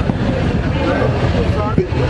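City street traffic rumbling steadily, with voices faintly in the background.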